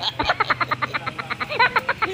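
A man laughing heartily: a fast run of short pulses that breaks into a voiced glide near the end.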